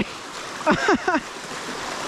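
Flood water rushing steadily through a gap pulled in a beaver dam, the pent-up water pouring out under pressure. A man laughs briefly about a second in.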